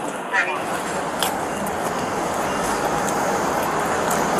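Steady road traffic noise picked up by a police body camera's microphone, building slightly in the low end, with a brief voice fragment just after the start.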